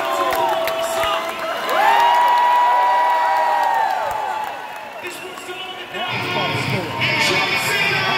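Rock concert crowd cheering and whooping, with a singer's long held note through the PA about two seconds in. A fuller band sound with deeper guitars and drums comes in about six seconds in.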